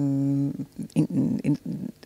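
A woman's drawn-out hesitation sound, a held "yyy" of about half a second, followed by a few short, broken voice sounds as she searches for a word.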